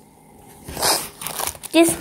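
Plastic and anti-static packing bags crinkling as a hand sorts through them, loudest about a second in.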